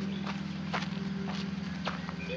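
Footsteps on hard ground, a sharp step about every half second, over a steady low hum.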